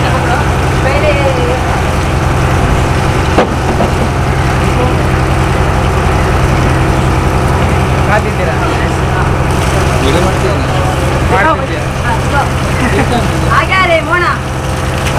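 Steady low drone of an idling engine, with a single sharp knock about three and a half seconds in. Faint voices can be heard in the background.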